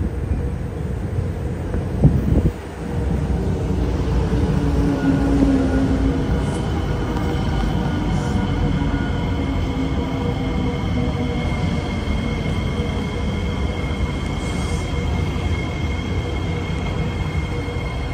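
C751B MRT train running into the station alongside the platform, with a steady rumble of wheels and running gear and steady whining tones from its motors as it slows. There is a single knock about two seconds in.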